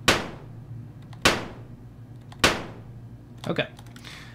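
Three short white-noise bursts from a Behringer Neutron synthesizer, recorded as a stereo impulse response and played back about a second apart; each starts sharply and dies away quickly.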